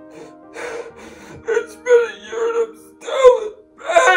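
A man crying in a series of loud wailing sobs with gasps between them, over soft sustained background music.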